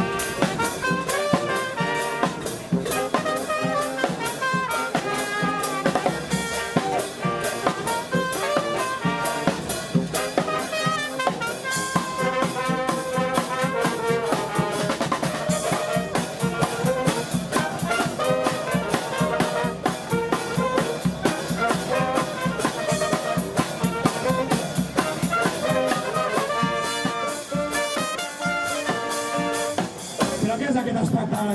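A xaranga street brass band playing live: trumpets, trombones and saxophones carry the tune over bass drum, snare and cymbals keeping a steady, driving beat.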